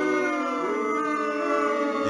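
Long-held tones at several pitches at once, like a sustained chord of background music, with one note gliding slowly upward about halfway through.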